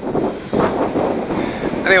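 Gale-force wind buffeting a phone's microphone: a dense rush of noise that dips briefly about half a second in and then surges back louder.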